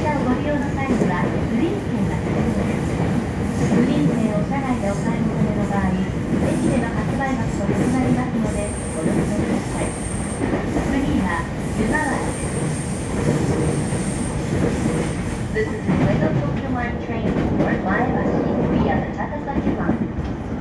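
JR East E231-1000 series commuter train with a Hitachi IGBT inverter, running, heard from inside the passenger car: a steady rumble of motors and wheels on the rails. A faint high-pitched whine comes and goes midway.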